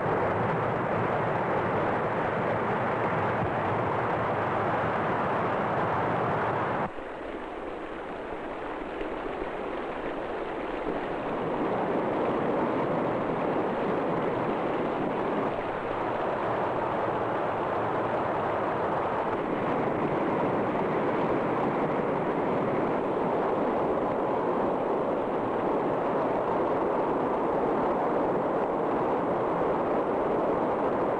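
A heavy torrent of foaming water rushing and churning as a loud, steady noise. It drops abruptly about seven seconds in, then builds back up over the next few seconds.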